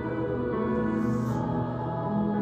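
Youth choir of seventh- and eighth-grade singers singing long sustained chords, moving to a new chord about half a second in and again near the end.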